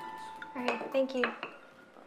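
A few light clinks of dishes and glassware on a kitchen counter, with a short spoken "Thank you".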